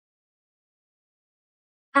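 Dead silence, with a voice beginning to speak just at the very end.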